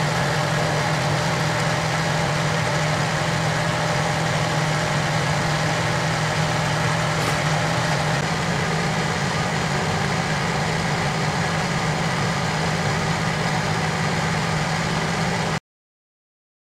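Clausing horizontal milling machine running steadily, its gear cutter on the arbor milling rack teeth; a constant machine drone that cuts off abruptly near the end.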